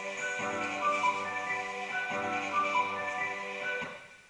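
Music with a repeating melody, which cuts off abruptly near the end.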